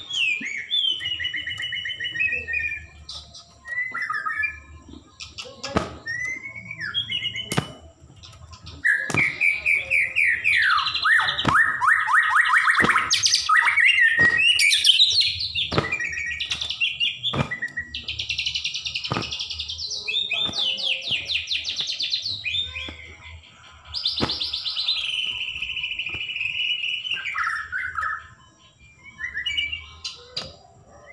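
White-rumped shama (murai batu, Bahorok strain) singing hard: a long run of varied whistled phrases, fast trills and sharp clicks, fullest and loudest from about a third of the way through to the halfway point.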